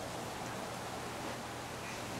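Steady outdoor ambient hiss, even throughout with no distinct events.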